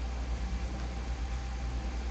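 A steady low hum with a faint even hiss, running without change.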